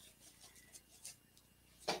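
Quiet room with faint rustles and a few light ticks of ribbon being handled and twisted on a wooden bow maker.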